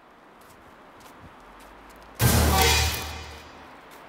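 A sudden loud horror-film music sting with a deep bass hit, about two seconds in, fading away over the next second. Before it, only faint low ambience.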